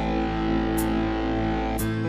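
Instrumental break of a dangdut song played on a Yamaha PSR-S975 arranger keyboard: held chords in a guitar-like voice, with a short high tick about once a second. Near the end the chord changes and the deep bass drops out.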